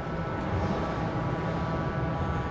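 Steady mechanical hum with a faint high whine held at one pitch, unchanging throughout.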